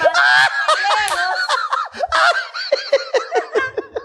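A man and a woman laughing hard together in a quick run of repeated ha-ha syllables, tapering off toward the end.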